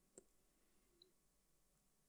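Near silence: room tone, with one faint click near the start.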